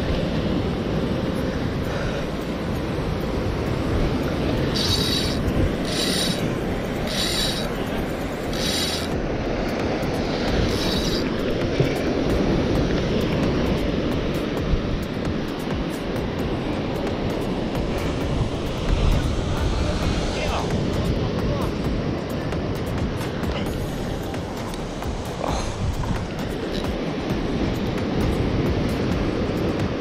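Surf breaking and washing against lava-rock cliffs, a steady rumbling wash. Between about five and eleven seconds in there is a short run of sharp ticks, about one a second.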